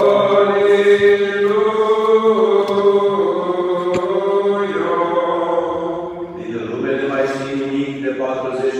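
Orthodox church chant from an akathist, sung slowly with long held notes. There is a brief break about six seconds in before the singing resumes.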